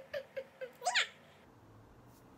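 A short, high-pitched squeal that sweeps sharply up and falls again about a second in, after a few brief soft vocal sounds.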